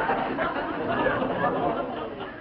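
Studio audience laughing after a punchline, a steady wash of many voices with no single voice standing out.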